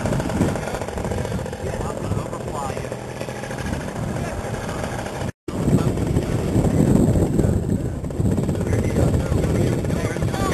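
Paramotor engine running, a rough, steady mechanical drone under a powered paraglider wing. The sound cuts out completely for a moment about five seconds in.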